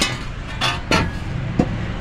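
A few short, sharp knocks, the two loudest close together about a second in and a fainter one shortly after, over a steady low hum.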